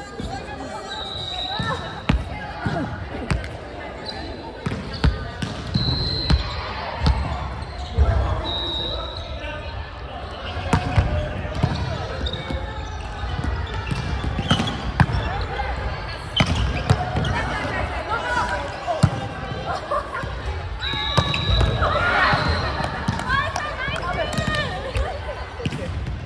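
Indoor volleyball rally: players shouting and calling to each other, with repeated sharp thuds of the ball being hit and landing on the court.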